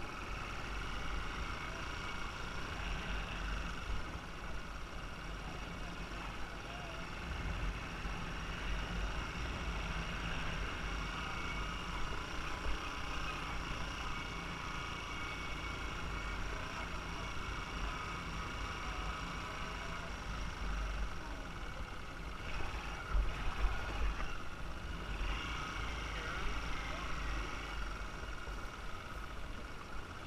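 Motorbike engine running steadily while riding, with a fluctuating low wind rumble on the microphone.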